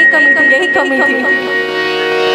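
Live ghazal music: a woman singing an ornamented, wavering melodic line over steady held harmonium notes. The melodic line fades after about a second and a half.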